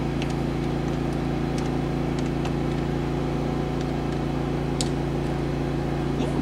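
Steady machine hum made of several constant low tones, with a few faint short clicks of calculator keys being pressed.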